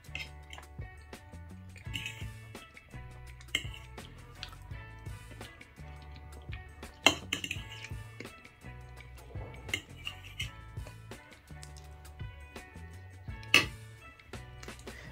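A metal fork clinking and scraping against a ceramic plate during eating, a few separate clinks with the sharpest about halfway through and another near the end. Soft background music plays underneath throughout.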